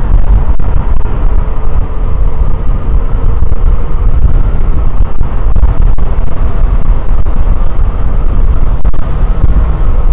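Wind buffeting the microphone of a moving motorcycle, over a steady low rumble of engine and road noise.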